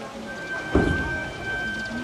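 Gagaku procession music: a held, steady high wind tone with a single loud, deep drum stroke about three-quarters of a second in, ringing out briefly.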